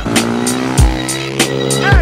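Hip-hop track with a steady beat, over which a KTM 450 SMR supermoto's single-cylinder four-stroke engine runs at held, steady revs.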